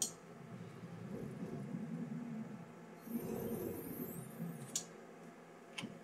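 The motorized tilting display of a grandMA2 lighting console being moved, a low uneven mechanical rumble in two stretches, about one and three seconds in. A sharp click of a key or latch comes at the start and further clicks come near the end.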